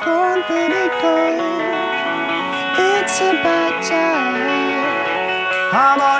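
Live rock band music: electric guitars playing under a wordless lead vocal melody that bends and slides between notes.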